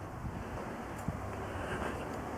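Steady rushing of wind on the camera microphone, with a faint tick about a second in.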